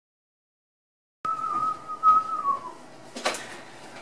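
A whistled note starts about a second in, held for about a second and a half with a slight waver, then slides down in pitch; a short breathy rustle follows near the end.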